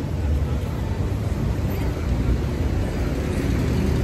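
Steady low rumble of road traffic outdoors, with no single event standing out.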